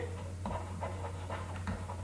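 Quiet gap with a steady low electrical hum and a few soft breath noises close to the microphone.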